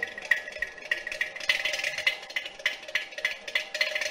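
Ghatam, the South Indian clay-pot drum, played in quick dry strokes with a short ringing tone, without the deep bass of the mridangam heard just before.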